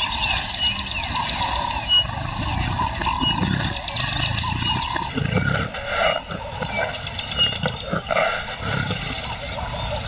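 Lioness calling: a series of low calls, about one a second, in the second half.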